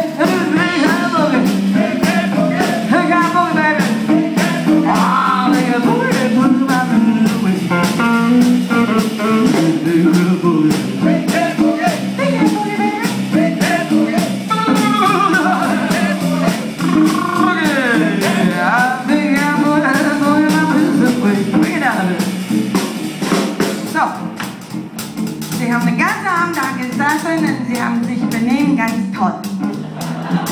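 Live blues band playing, with a drum kit keeping a steady beat under electric guitar and a woman's singing on top. The music eases off briefly about three-quarters of the way through.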